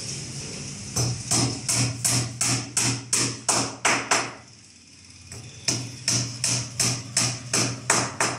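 Hammer blows while a wooden door is being built, struck at a steady pace of about three a second: a run of about ten, a pause of about a second and a half, then a second run of about eight.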